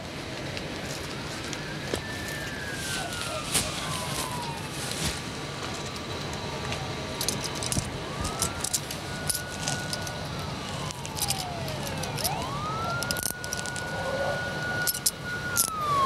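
A police siren in a slow wail, rising, holding and falling three times, while handcuffs click shut on a suspect's wrists in a few sharp clicks, the last just before the end.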